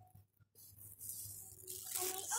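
Faint supermarket background noise: a steady low hum and a soft hiss that grows louder after about a second, with a brief gap of near silence just under half a second in.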